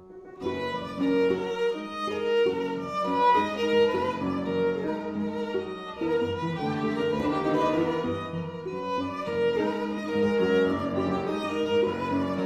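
Piano trio of violin, cello and piano coming in together about half a second in and playing a dense, rhythmic passage of many short notes.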